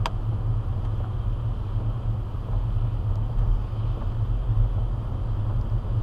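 Steady low rumble of a car driving on a wet city street, heard from inside the cabin: engine and tyre noise with a light hiss from the wet road. A short sharp click right at the start.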